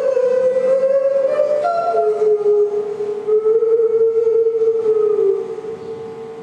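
A man singing one long, wordless held note into a microphone, drifting up a little at first and settling lower about two seconds in, over acoustic guitar; the note fades out a little after five seconds.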